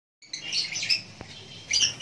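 Masked lovebirds chirping in a cage: a run of shrill, high chirps in the first second, a short lull, then a few more chirps near the end.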